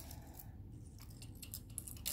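Faint, sparse clicks of metal jewelry pieces being picked up and shifted on a marble tabletop.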